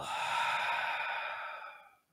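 A man's long, deliberate exhale close to the microphone, a breathy sigh that fades out over about two seconds.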